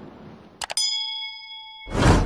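Subscribe-button sound effect: a quick double mouse click about two-thirds of a second in, then a single bright bell ding that rings for about a second. A rush of noise swells in just before the end.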